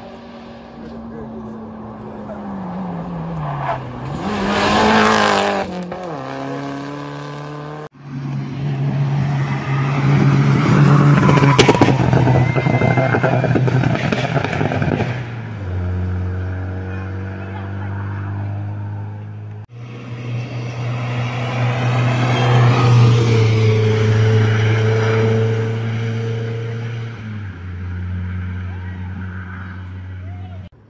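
Rally car engines revving hard up a hill road, the pitch stepping and gliding up and down through gear changes. One car passes close about five seconds in with a loud rush of engine and tyre noise. The sound breaks off suddenly twice as one stretch of running gives way to another.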